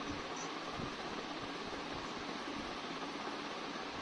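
Steady background hiss of the call line and room, with no speech.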